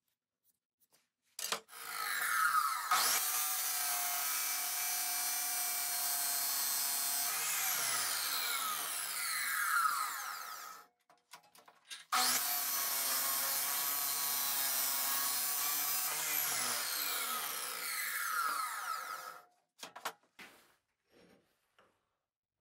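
Abrasive chop saw cutting metal, run twice: each time the motor winds up, runs steadily for about six seconds with a grinding hiss, then is switched off and falls in pitch as the disc spins down.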